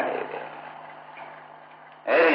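A pause in an old sermon recording: steady background hiss with a low, constant hum, as the last syllable of the speaker's voice fades away in the first half second.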